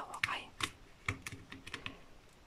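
Small plastic snap-lid containers in a diamond-painting drill storage box being handled: a quick series of light plastic clicks as a lid is worked open and shut.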